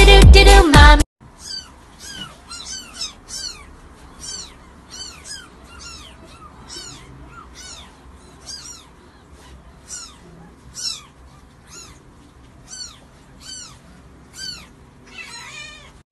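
Young kittens mewing over and over in short, high, thin calls that rise and fall in pitch, about one or two a second. Loud music cuts off about a second in, just before the mewing starts.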